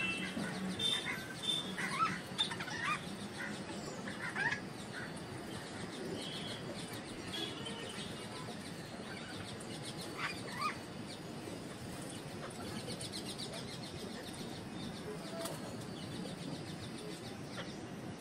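Rose-ringed parakeet preening in its cage, with feathers rustling and a few short chirps that glide in pitch: a cluster in the first few seconds and a pair about ten seconds in.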